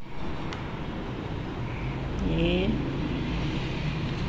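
Steady low background rumble, like distant traffic or a running fan, with a brief faint voice about two seconds in.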